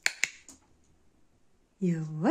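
Two sharp clicks at the start and a fainter one about half a second in. Near the end comes a short hum from a person, rising in pitch like a questioning 'hm?'.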